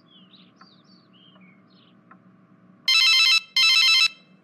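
Telephone ringing with a warbling electronic trill, two short rings close together near the end, as a call goes through before it is answered.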